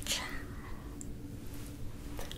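A woman's short, breathy whisper close to the microphone in the first half second, with no clear words. After it comes a faint steady hum and a single small tick about a second in.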